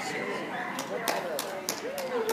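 Background chatter of several people talking, with a few sharp taps spaced about a third of a second apart in the second half.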